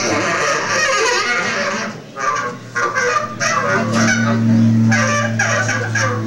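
Free-jazz saxophone blown hard in harsh, overblown honks and screeches, with the drum kit playing behind it. The sax drops away briefly about two seconds in.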